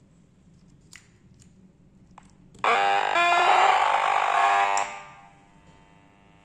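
Small loudspeaker of a homemade LED light-link audio receiver giving out a loud, harsh electronic buzz for about two seconds, starting about two and a half seconds in and fading out, then settling into a faint steady hum. A couple of faint clicks come before the buzz.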